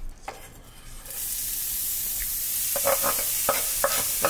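Chopped onion and peppers slid off a cutting board into a hot oiled pan. A couple of knocks come in the first second, then a steady sizzle starts about a second in as the vegetables hit the fat. A few short clicks or scrapes come near the end.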